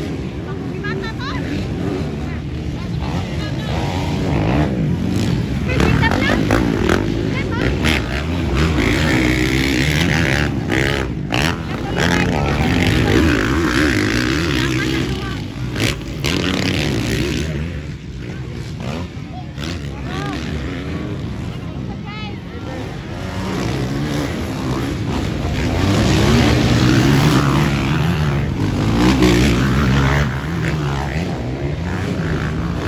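Motocross dirt bikes racing past, engines revving up and falling back again and again as riders take the jumps, with voices heard alongside.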